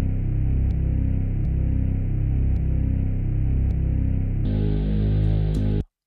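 A bass line played back before compression, its low note repeating about three times a second, then changing to a held note about four and a half seconds in and stopping abruptly near the end.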